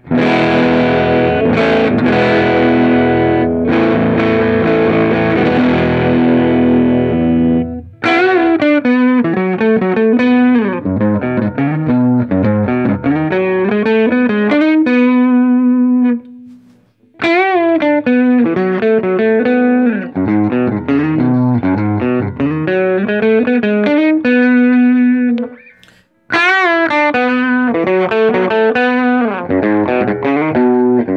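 Music Man Stingray RS electric guitar played through a Strymon Iridium amp modeller on its Fender setting with the gain turned up, giving an overdriven tone. A strummed chord rings for about eight seconds, then single-note lines and riffs follow, each phrase ending on a held note, with two short breaks between phrases.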